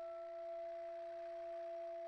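Saxophone quartet sustaining two steady notes an octave apart, with a soft breathy hiss of air beneath them.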